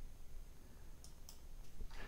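Two quick, faint clicks of a computer mouse button about a second in.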